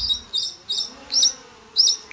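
A bird calling with a short, high chirp repeated about five times at uneven intervals, over a faint low hum.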